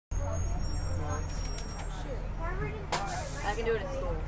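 Steady low engine rumble inside a moving school bus, under indistinct chatter of other passengers. About three seconds in there is a sharp click followed by a brief hiss.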